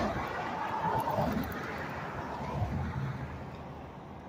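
Road traffic: cars passing, a steady rush of tyre and engine noise that grows fainter over the few seconds.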